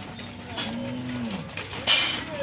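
Steers in a corral lowing: one long low moo that drops in pitch as it ends. Near the end comes a short, sharp, loud noise.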